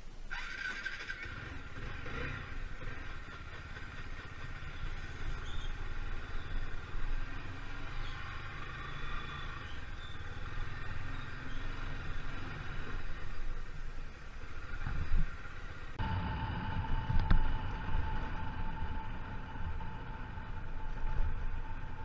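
TVS motorcycle engine running at low speed on a rough dirt trail. About sixteen seconds in, the sound cuts abruptly to another riding passage with a steadier hum.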